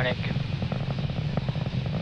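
Falcon 9 first-stage engines during ascent: a steady low rumble with a fine crackle.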